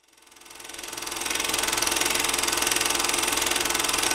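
Film-camera running sound effect: a fast, even mechanical rattle, like reels turning through a cine camera, that fades in over the first second and a half and then runs steadily.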